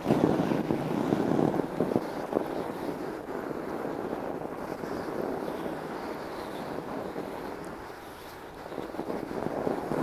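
Fat bike tyres rolling and crunching over snow on a frozen lake, a steady rough noise that eases off briefly near the end and picks up again, with wind on the microphone.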